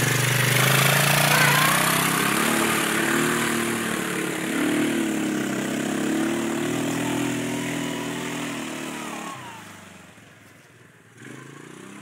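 Quad bike engine running and revving as it rides away along the wet track, its pitch rising and falling. The sound fades out over the last few seconds as it moves into the distance.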